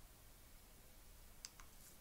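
Near silence: a faint steady hiss, with two faint short clicks about one and a half seconds in.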